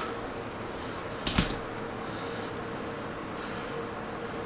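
A single short, sharp clack about a second and a half in, over quiet room tone with a faint steady hum.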